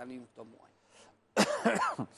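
A man's short throat-clearing cough. It comes suddenly about a second and a half in, loud and rough, between bits of speech.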